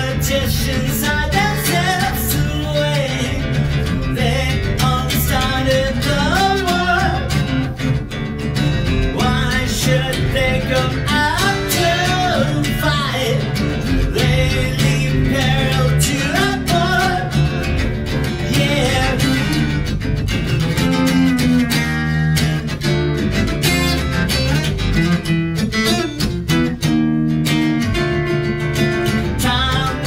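Steel-string acoustic guitar played continuously, strummed and picked.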